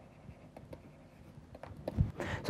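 Faint handwriting with a pen: a few short, scattered scratching strokes.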